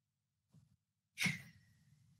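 A person breathing out sharply into a microphone, one short sigh about a second in, after near silence.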